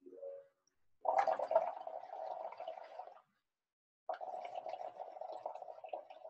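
Blowing through a drinking straw into a paper cup of soapy water, making it bubble and gurgle, in two blows of about two seconds each with a pause of about a second between.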